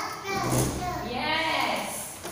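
A young child's voice, high and sliding up and down in pitch, with a low steady hum underneath from about a third of a second in.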